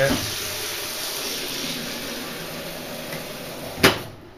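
Water running from a kitchen tap into a plastic electric kettle: a steady rush that stops just before the end with one sharp knock.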